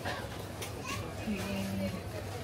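Indistinct chatter of shoppers in a busy store over a low steady hum, with one voice drawn out briefly in the second half.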